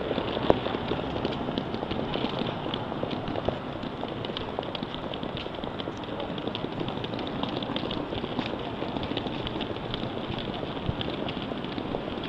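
A wheeled hard-shell suitcase rolling over stone paving, its wheels giving a steady rattle full of small rapid clicks, mixed with footsteps.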